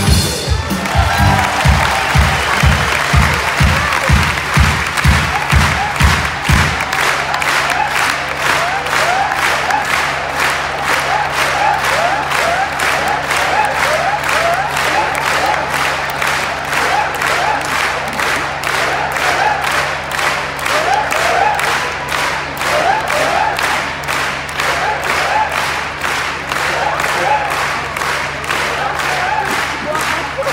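Circus audience applauding and cheering after the act, with a deep music beat under it for the first six seconds or so; the applause then settles into steady rhythmic clapping in unison, with scattered whistles.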